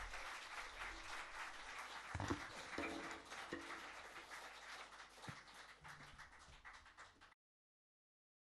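Audience clapping in a small room, thinning out gradually and then cut off suddenly near the end.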